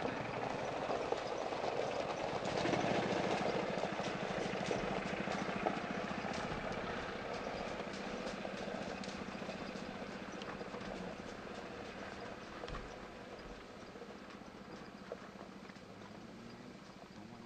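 Small utility cart's motor running as it drives slowly over gravel, with a walking horse's hooves crunching and clopping on the gravel alongside. Both grow fainter from a few seconds in as they move away.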